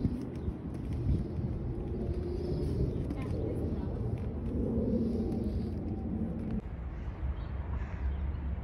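Indistinct, muffled voices over a steady low rumble, the voices fading out about two-thirds of the way through.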